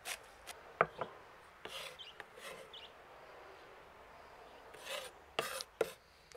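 Kitchen knife chopping fresh herbs on a wooden cutting board: faint, irregular taps and scrapes of the blade on the wood, with a louder cluster of strokes near the end.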